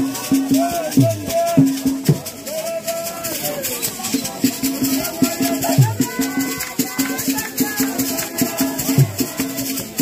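Group of women singing a church song over a steady percussion beat of about two beats a second, with rattling.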